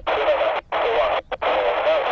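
Air-band radio receiver hissing with static from a weak, broken transmission. The noise cuts out in several short gaps, and a faint, unintelligible wavering voice-like tone sits under it.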